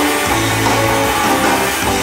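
A live instrumental surf rock band plays loud and steady, with electric guitars over a drum kit.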